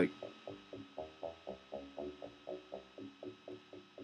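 Arpeggiated synth brass from an Ableton Operator 'Brass-Brassy Analog' patch, played by the PolyArp arpeggiator as a quiet run of short notes, about four a second. The pattern is being confined to the lower part of the keyboard as its top note is lowered.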